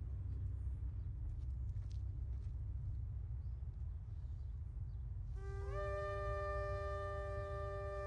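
Two shofars (ram's horns) sounding a long, steady, held blast that starts about five seconds in; the second horn joins a moment later, sliding up into its pitch. Before the blast there is only a low rumble on the phone microphone.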